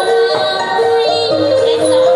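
Traditional Khmer wedding music: a melody of held notes stepping up and down.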